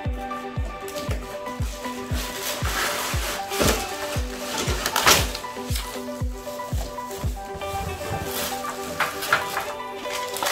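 Background music with a steady beat of about two low thumps a second. A few brief rustles and knocks of cardboard and plastic packaging sound over it near the middle as a barbecue grill is lifted out of its box.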